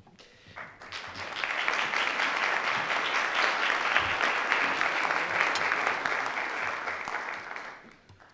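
Audience applauding: the clapping swells up about half a second in, holds steady, and dies away near the end.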